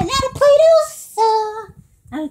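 A child's high voice singing a short sing-song phrase that ends on a held note, then stops just before two seconds.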